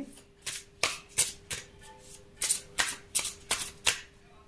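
A deck of tarot cards being shuffled by hand: a quick, irregular run of about a dozen short, crisp strokes of card against card.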